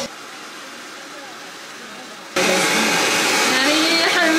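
Handheld hair dryer blowing in a steady rush, quieter at first, then abruptly much louder a little over two seconds in, with a woman's voice over it.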